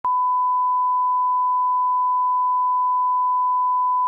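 Broadcast line-up test tone played over colour bars: a single steady 1 kHz pure tone at constant level, starting with a short click.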